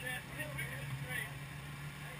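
A motorcycle engine idling with a steady low hum. Brief indistinct talk runs over it in the first second or so.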